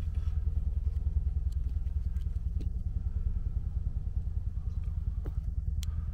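Car engine idling: a steady, low, evenly pulsing rumble, with a few faint clicks.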